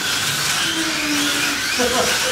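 Slot cars with Rush 36/38k class electric motors running on a multi-lane track: a steady high-pitched motor whine with faint rising and falling glides as the cars speed up and slow down.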